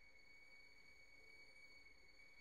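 Near silence with a faint, steady high-pitched tone.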